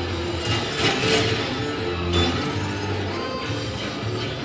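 Orchestral-electronic film score with a steady low pulse, with metallic robot-fight clanks and crashes about a second in and again near two seconds.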